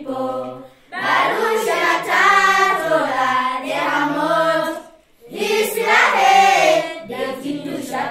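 Singing: a song sung in phrases, with short breaths about a second in and about five seconds in.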